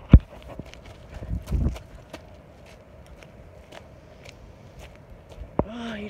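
A person's footsteps crunching on a stony path. There is a loud sharp knock just after the start, as she jumps, and a dull thud about a second and a half in.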